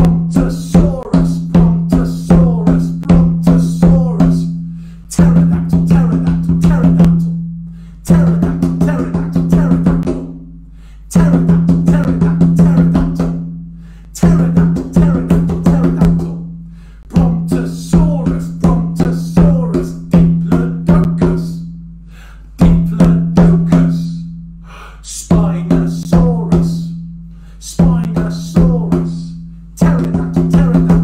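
Large hide-headed hand drum played with both palms, a repeating beat in phrases of about two to three seconds with short gaps between them, its low body resonance ringing under the strikes.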